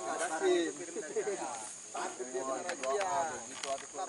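Indistinct voices talking over a steady high-pitched hiss, with a few small clicks near the end.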